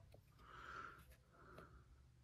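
Near silence: faint breaths through the nose, twice, with a few light ticks from handling cardboard trading cards.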